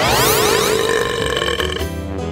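A long cartoon burp sound effect, lasting nearly two seconds, after gulping a fizzy cola, with a rising sweep and music under it.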